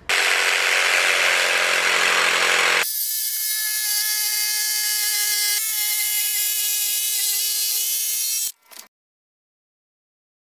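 Jigsaw cutting through a hardwood jarrah slab: a loud rasping cut for about three seconds, then a steady pitched motor whine, which cuts off suddenly near the end.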